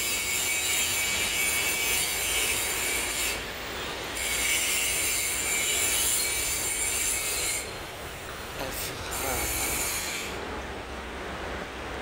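A continuous high-pitched shrill whine, dropping out briefly about three seconds in and again around eight seconds, then weakening near the end, over a low steady rumble.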